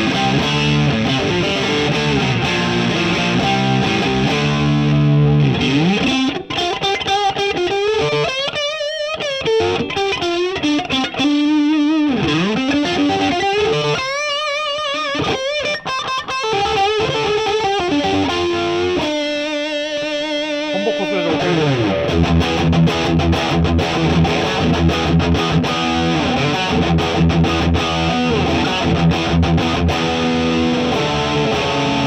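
Distorted electric guitar from a Fender Rarities Flame Maple Top Stratocaster through a Marshall JCM2000 on its gain channel. It plays chords for the first few seconds, then single-note lead lines with wide vibrato and bends, then goes back to chording from about 21 seconds in. The tone is thick and punchy, pushing forward.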